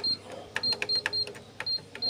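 Canon MF8280Cw control panel giving a short, high key beep with a click at each button press as the arrow keys step the cursor through its menu. There are about six beeps in quick, uneven succession.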